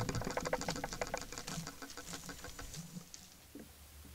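Quick run of light clicks and scrapes, several a second, fading out after about three seconds: an animal pressed up against a trail camera, its fur and body brushing the housing close to the microphone.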